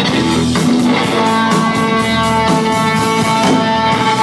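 Live rock band playing an instrumental passage: electric guitars strumming over a drum kit, with a long held note ringing out from about a second in.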